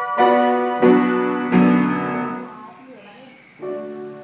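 Upright piano being played: three chords struck in quick succession in the first second and a half, left to ring and fade away, then after a short pause new notes begin near the end.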